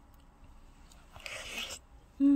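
A soft mouth sound from someone eating: quiet for about a second, then one short hissing noise lasting just over half a second.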